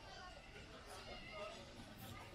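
Faint voices of people around, with a high wavering voice-like call about a second in.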